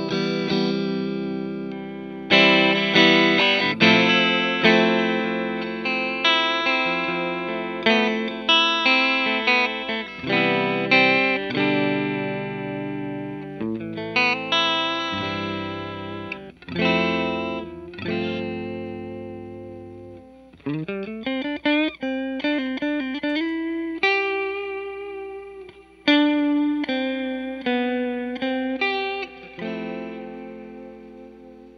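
Fender Stratocaster electric guitar played clean through a Grobert Second One pedal in vibrato mode into a Fender '65 Twin Reverb amp. Chords and single notes are strummed and picked, each ringing out and decaying, with the pitch wavering slightly. A little past two-thirds of the way in, a note slides upward.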